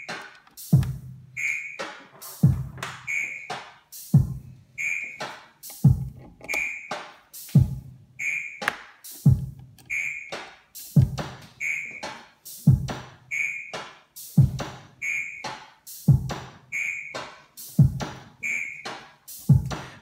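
Eurorack Simple Drum module triggered by a Baby-8 eight-step sequencer, playing a looping electronic drum pattern: low kick hits that drop in pitch, sharp clicks and a short high beep, the whole pattern repeating about every second and a half to two seconds.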